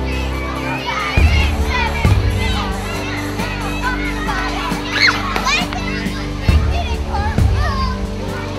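Many young children's voices shouting and cheering together over music with a heavy, thumping bass.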